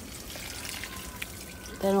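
Water pouring from a watering can's rose onto the potting soil of a planter, a steady soft trickle.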